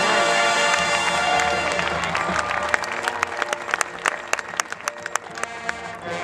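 Marching band playing: held band chords, then from about halfway in a quieter passage full of sharp, irregular percussive hits.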